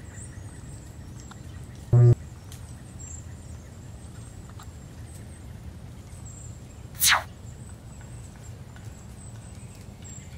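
Outdoor background ambience: a steady low rumble with faint high chirps and ticks. It is broken by two short loud sounds, a low buzzing tone about two seconds in and a sharp hissing burst about seven seconds in.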